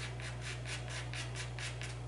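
A pastel stick scraping across paper in quick short strokes, about five or six a second, as fur is hatched in.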